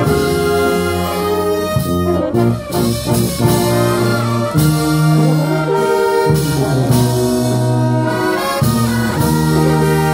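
Brass band with trumpets and a tuba playing a slow tune in long held notes and chords.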